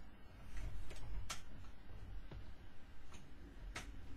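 A few faint, irregularly spaced clicks and taps over a low rumble: someone moving about and handling things off camera while searching for a fallen puzzle piece.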